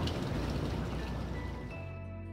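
Pool water splashing and lapping as a swimmer strokes away through it. Background music with sustained notes comes in near the end.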